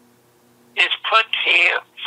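A man speaking, after a short pause that holds only a faint steady hum.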